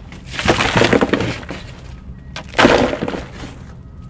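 Broken chunks of adobe brick scooped up by hand and dropped into a basin: two bursts of gritty crunching and clattering, the first about half a second in and the second near three seconds.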